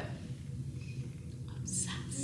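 A woman whispering, short breathy hisses near the end, over a low steady room hum.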